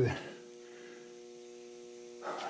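Steady electrical mains hum made of several even tones, with the end of a spoken word fading out at the start.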